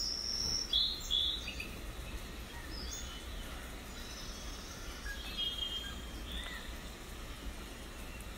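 Birds chirping and calling: a cluster of short, high calls in the first second and a half, then scattered calls, over a steady low background noise.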